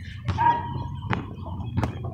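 A basketball bouncing on an outdoor asphalt court: a few separate knocks spread unevenly over two seconds, with a faint thin tone briefly early on.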